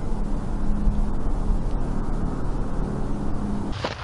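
A motor vehicle's engine running steadily, a low rumble with a constant hum. It stops suddenly near the end.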